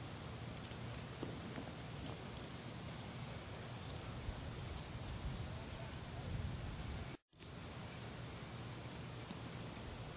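Steady outdoor background noise, mostly a low rumble, with a faint high ticking and a few soft clicks. The sound drops out completely for a moment about seven seconds in.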